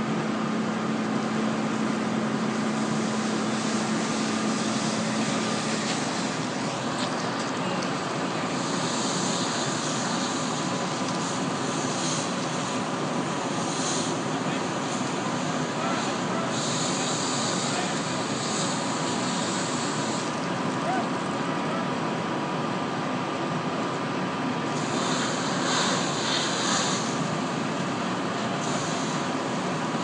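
Fire hose spraying water onto a burning fibreglass boat, with hissing surges that come and go several times, over a steady mechanical drone with a faint hum.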